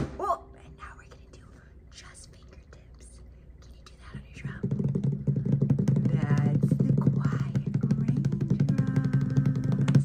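Hands beating heavily and very rapidly on a drum, a continuous rumbling roll played as thunder. It starts about four seconds in and ends with one hard strike.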